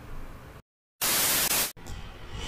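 A brief dead silence, then a loud burst of white-noise static about two-thirds of a second long that starts and cuts off suddenly: an audio artefact at the splice between two edited video segments.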